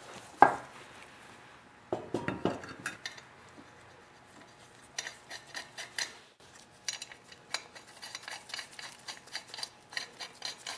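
An ATV's front wheel knocking as it is fitted onto the hub, then the steel lug nuts clicking and clinking as they are threaded on by hand.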